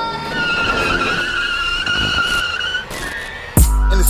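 Tires squealing in one wavering screech lasting about two and a half seconds over music. A deep, heavy bass beat comes in near the end.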